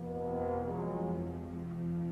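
Orchestral music: low, sustained chords held steadily and swelling slightly in loudness.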